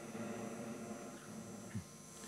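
Quiet pause with a faint, steady electrical hum and buzz, with one small faint sound near the end.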